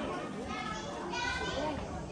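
Many children's voices chattering over each other in an open hall, with one high voice standing out about a second in.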